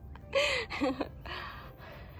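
A woman laughing breathily: three short, breathy bursts within about a second and a half, the first with a falling voiced note.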